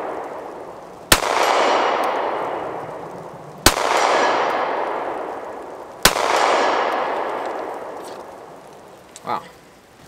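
Three slow, aimed shots from a Stoeger STR-9C 9mm compact pistol, about two and a half seconds apart. Each shot is followed by a long echo that dies away over about two seconds.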